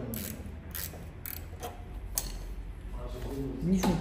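Ratchet wrench clicking in short, irregular strokes, metal on metal, as an adjuster at the rear wheel of a SYM Jet 14 50cc scooter is tensioned a little more.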